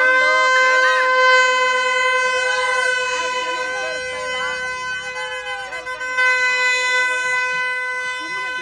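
A single steady pitched tone, held without a break, over the voices of a crowd.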